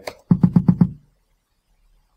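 Kick drum from the DR Fusion drum plugin playing back a quick run of about six hits, roughly eight a second, starting about a third of a second in and over within the first second.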